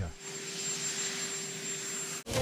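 Helicopter turbine engines running: a steady high-pitched hiss with a steady low humming tone beneath it.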